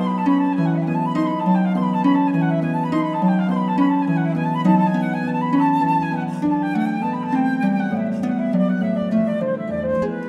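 Concert flute and pedal harp playing a classical duet: the harp keeps up a quick, repeating rising-and-falling figure while the flute plays above it.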